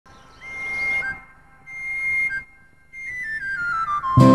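Music intro played on a high, whistle-like wind instrument: two held notes, each dipping at its end, then a run of short notes stepping downward that leads into the song.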